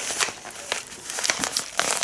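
Shiny foil zip-lock pouch crinkling as it is picked up and handled: an irregular run of sharp crackles.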